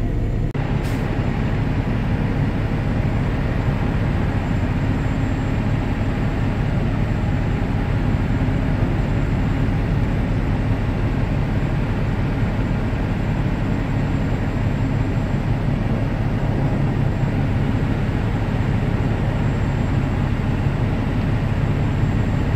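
Semi-truck's diesel engine running steadily at low revs, heard from inside the cab as the tractor backs slowly under a trailer to couple up.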